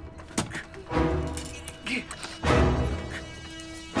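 Tense film score of steady held tones, cut by three heavy thuds about half a second, one second and two and a half seconds in, the last the loudest.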